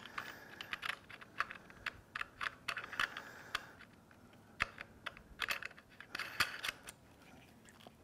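Light, irregular clicks and taps of metal and plastic parts as a router guide bushing is snapped into the router's base plate and its retainer ring fitted.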